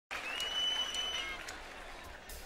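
Concert audience applauding and cheering, with one long shrill whistle through the first second; the applause fades toward the end.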